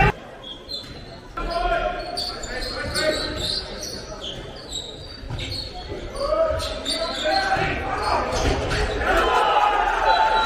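A handball bouncing on the sports-hall floor during play, with players' shouts echoing through the large hall. The shouts and crowd noise grow louder near the end.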